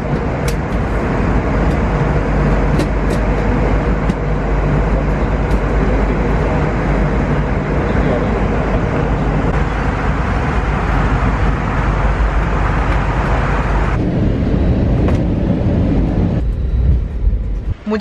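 Steady cabin noise of an airliner in flight: a loud, even rush of engine and airflow with a deep rumble and a faint hum. The noise turns duller about fourteen seconds in.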